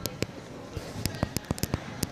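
A run of sharp clicks and taps, a couple near the start and a quick irregular cluster in the second half.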